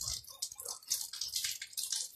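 Quiet handling of a plastic water pitcher as its screw lid is taken off, with small scattered clicks, over a steady faint hiss.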